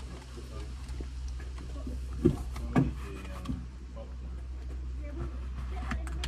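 Faint, indistinct voices over a steady low hum in a car cabin, with two short louder sounds about two and a half seconds in.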